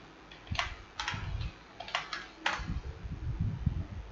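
Keystrokes on a computer keyboard: a few separate clicks spread over the first three seconds, with soft low thuds beneath them, as a line of code is typed.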